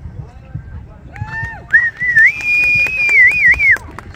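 A spectator's high whoop, then a loud, long whistle that rises slightly and wavers at the end, with hand clapping, cheering a clear show-jumping round.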